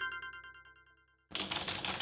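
A chiming electronic call tone fades out, then a short silence. About a second and a half in, computer keyboard keys start clattering under typing.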